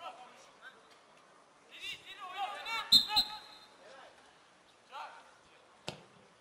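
Players shouting across a football pitch, with two sharp thuds of the ball being kicked about three seconds in, a quarter second apart. Another single sharp kick comes near the end.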